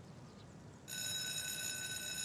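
Electric school bell ringing, a steady unbroken ring that starts suddenly about a second in: the signal that the class period is over.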